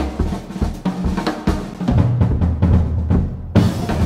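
Live jazz band playing, with the drum kit to the fore, snare and bass-drum strokes over piano and double bass. About three and a half seconds in the band stops briefly, then comes back with a loud accent.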